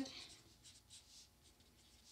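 Felt-tip marker writing on construction paper: faint, short strokes scratching across the sheet as a word is written.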